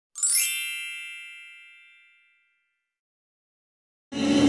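A bright chime sound effect: a quick rising shimmer into a ringing ding that fades out over about a second and a half.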